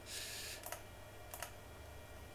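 Faint computer keyboard typing: a short soft rustle at the start, then two sharp key clicks about two-thirds of a second apart.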